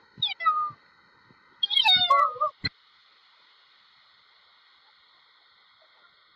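A cat meowing twice, each call high and falling in pitch, the second longer and louder, followed by a single sharp click.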